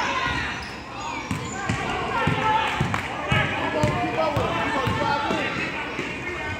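A basketball dribbled on an indoor court floor, a run of short irregular thumps, with voices calling out around it.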